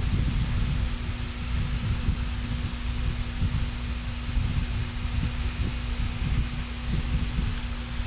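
Steady background hiss with a low constant hum, under irregular soft low rumbles and rustles as a baby moves over a cloth bed sheet.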